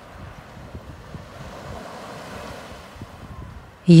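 Sea surf: waves washing in on the shore, a soft, steady rushing.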